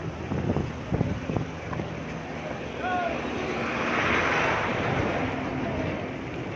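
Wind buffeting a phone's microphone with low thumps, then a rushing hiss that swells about halfway through and fades near the end, with faint distant voices.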